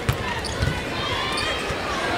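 A basketball being dribbled on a hardwood court, bouncing several times at an uneven pace over a steady background of arena crowd voices.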